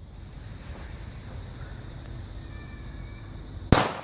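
An FKW B-Böller firecracker exploding: one sharp, loud bang near the end, followed by a short echo.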